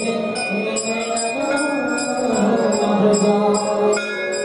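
Devotional mantra chanting with music, the melody held in long sung notes. Over it, a metallic ringing strikes evenly about two to three times a second, like a hand bell or small cymbals.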